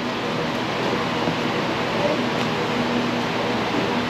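Steady background noise with a low hum under it and faint voices in the distance.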